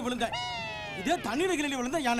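Men talking, broken about a third of a second in by a single high, drawn-out cry lasting under a second and falling slightly in pitch, after which the talking resumes.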